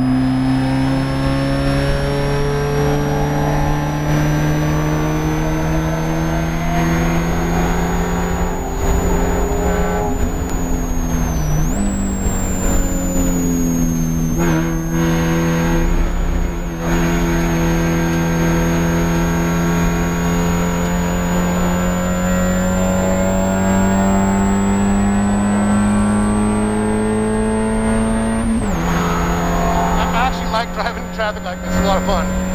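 Spec Miata's four-cylinder engine under hard track driving, heard from inside the cockpit, its note climbing steadily. Its pitch jumps up about a third of the way in, a downshift, and drops suddenly near the end, an upshift. A high-pitched whine follows the engine speed throughout.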